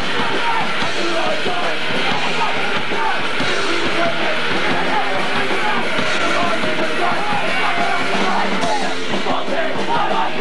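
Punk rock band playing live at full volume, with a singer yelling over dense, distorted guitars and drums.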